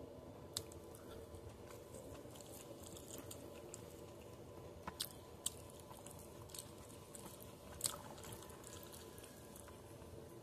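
Close-up chewing of a mouthful of rice and beef, soft and wet, with a handful of sharp mouth clicks and smacks, most of them between about five and eight seconds in.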